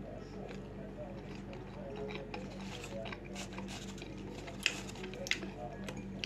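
A person chewing a soft bun with chocolate filling, with quiet mouth noises and a couple of short sharp clicks near the end, over a steady low hum.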